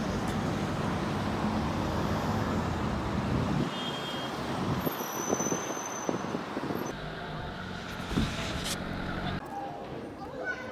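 Street traffic noise: a steady rumble of passing road vehicles, with brief thin high squeals a few seconds in. The sound softens and changes character about seven seconds in.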